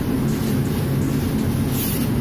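Steady low mechanical drone of laundry-room machinery running.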